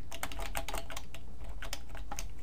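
Computer keyboard being typed on: a quick, uneven run of keystrokes, about six or seven a second.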